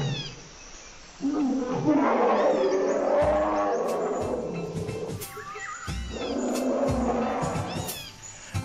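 Recorded lion roars with jungle bird calls, played over the PA as a sound-effect intro: two long roars, the first starting about a second in and the second near six seconds, with a few deep booms underneath.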